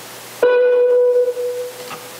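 A single chime-like tone from the computer, sounding suddenly about half a second in and ringing out to fade over about a second and a half: a message alert as a pupil's answer arrives in the chat.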